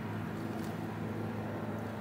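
A steady low hum with faint hiss and no distinct event, the background of a kitchen.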